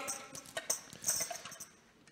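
Small hand percussion instruments clinking and jingling in a basket as they are rummaged through and handed out. The light jingling dies away near the end.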